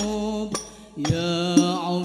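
A male lead voice sings a sholawat melody in long, wavering held notes, with sparse frame drum (terbang) strokes in the hadroh banjari style. The voice drops away briefly just after half a second in, then comes back at about one second together with a drum stroke.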